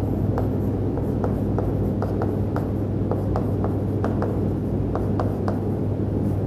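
Chalk writing on a chalkboard: a run of short taps and scratches as letters are chalked, over a steady low hum.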